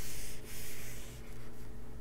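A hand rubbing and sliding over the paper pages of an open coloring book, pressing the spread flat. There are two rubs in the first second or so, then it goes quieter.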